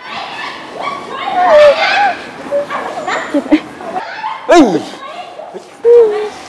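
Distressed human cries and wails over a noisy commotion of voices, with several short cries that fall sharply in pitch.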